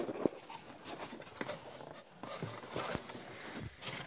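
Cardboard box being handled and folded by hand as it is turned inside out, with scattered irregular taps, knocks and rustles.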